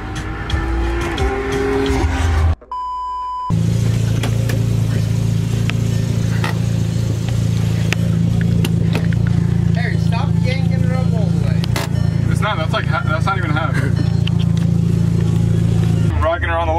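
A steady low hum, joined by faint voices in the second half. Before it, a steady electronic tone lasts about a second, and before that the inside of a moving car.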